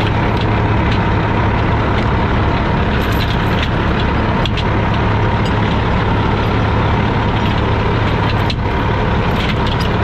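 Heavy diesel truck engine idling steadily close by, with a few sharp metal clinks of a heavy chain being hooked to the truck's front tow point.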